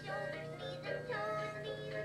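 Electronic plush toy puppy singing a song in a synthesized voice with a backing tune.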